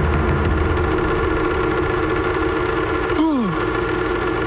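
Sustained synthesizer tones of a film score, with a low rumble under them that stops about three seconds in, followed by a short downward-sliding tone.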